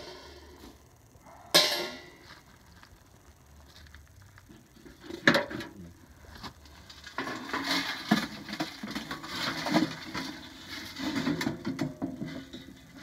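A stainless steel turkey pan clanks sharply twice against metal, then charred wood chips rattle and scrape inside the pan as it is lifted and tipped. The char doesn't sound like glass, which to the maker suggests it should have gone a little longer in the stove.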